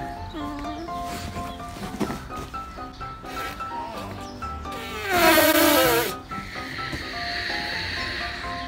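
Background music with a simple melody; about five seconds in, air squeals out of the neck of a small latex balloon for about a second, the pitch falling as it empties. Near the end comes a softer breathy hiss of air being blown into a balloon.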